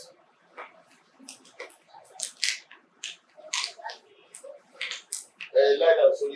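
A man speaking through a handheld microphone in short broken phrases with brief pauses, many of them sharp hissing sounds.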